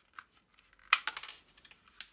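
Plastic Ninja-Shooter toy disc pistol clicking as it is handled: a faint click, then about a second in a sharp plastic click followed by a quick run of smaller clicks and rattles.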